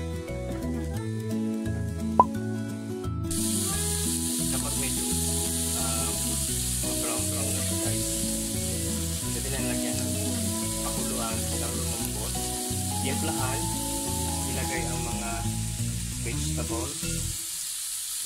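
Chicken pieces sizzling as they fry in a wok, with occasional spatula scrapes; the sizzle comes in suddenly about three seconds in, after a single sharp click. Background music plays throughout.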